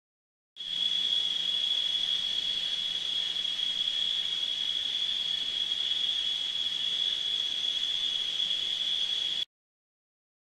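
Steady, high-pitched insect chorus: one unbroken shrill tone over a faint hiss. It cuts in abruptly just after the start and cuts off abruptly shortly before the end.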